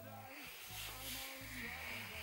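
A female-sung pop song playing at low volume, its melody over a steady bass line, with a soft hiss-like, breathy noise rising about half a second in.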